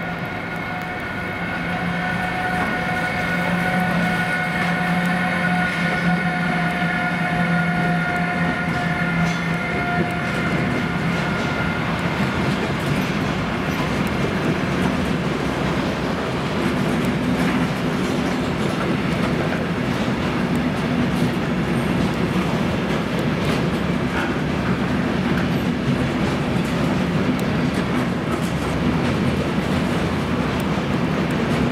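Long electric-hauled freight train passing close by: a steady whine from the locomotive fades after about ten seconds, then the continuous rumble and clickety-clack of intermodal freight wagons carrying truck trailers rolling past.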